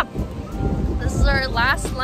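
Wind buffeting the microphone, a steady low rumble, with a brief high-pitched voice about halfway through.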